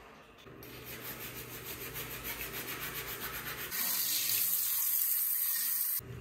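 Green rubber-gloved hands rubbing together at a bathroom sink, a quick even rhythm of about five strokes a second, then a steady rush of tap water over them for the last two seconds.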